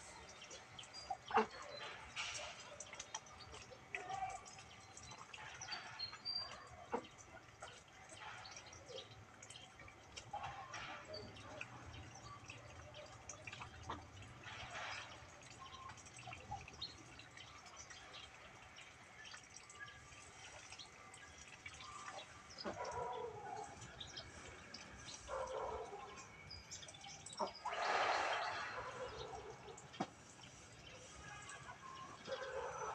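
Quiet outdoor yard ambience: scattered faint clicks and ticks, with a few distant calls in the second half and one louder call about two seconds before the end.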